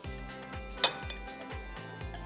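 Background music with a steady beat, and about a second in a single sharp clink of crockery: a small ceramic bowl knocking against a glass mixing bowl as it is tipped out.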